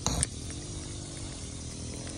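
A faint steady low hum over a low rumble, with a short click just after the start.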